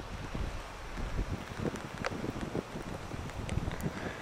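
Wind buffeting the camera microphone on a windy day: an uneven low rumble that swells and drops with the gusts.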